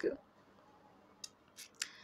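A few faint, short clicks about a second in, close together, in otherwise near silence.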